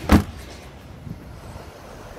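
The boot lid of a 2019 Audi A3 saloon being shut, one loud thud just after the start, followed by steady low outdoor background noise.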